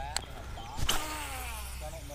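Baitcasting reel casting a topwater frog: a click as the spool is freed, then the spinning spool's whine, falling in pitch as the line pays out.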